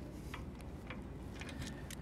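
A few faint metal clicks from snap ring pliers and a steel snap ring as it is worked into the groove on a trailer swivel jack's mounting pin.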